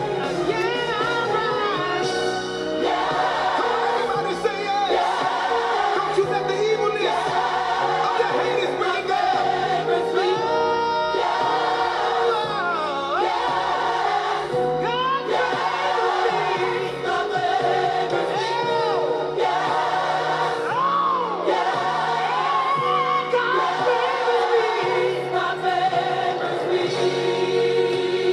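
Gospel music: voices singing, choir-like, over instrumental accompaniment, steady throughout.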